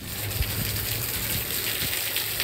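Rainwater gushing steadily from a roof drain spout and splashing down, with heavy rain falling.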